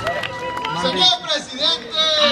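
Concert crowd voices, talk and shouts, as the band's music drops away at the start, with a faint steady held tone underneath.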